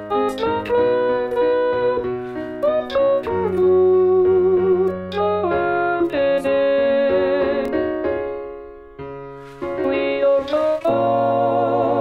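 Computer score playback of a gospel SATB choral arrangement: synthesized piano accompaniment under a single wavering alto melody line. The music dips briefly about nine seconds in, then fuller sustained choir chords come in near the end.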